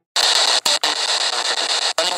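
A spirit box, a radio sweeping through stations, hissing loud static that starts abruptly just after the start. The static drops out for a split second a few times as the sweep jumps.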